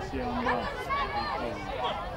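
Spectators and young players calling and shouting over one another at a rugby game, a busy mix of voices with no clear words.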